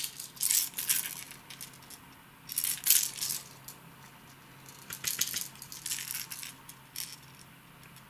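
Hard plastic wobblers and their treble hooks clicking and clattering against each other as they are picked up and handled, in several irregular bunches of sharp clicks, over a faint steady hum.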